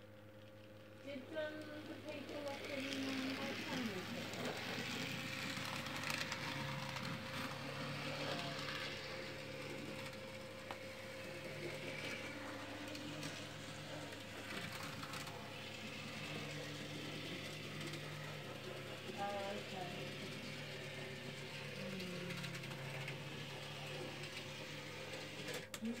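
Dapol N gauge Schools class model steam locomotive running under DC power on a test run after repair: its small electric motor whirrs steadily, with the wheels running on the rails. It starts about a second in and its pitch shifts a little as the speed changes.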